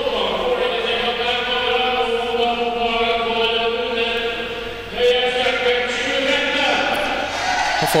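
A group of voices chanting in long held notes, two drawn-out phrases with a break about five seconds in.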